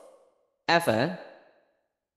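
Speech only: a voice says one short phrase a little under a second in, with dead silence around it.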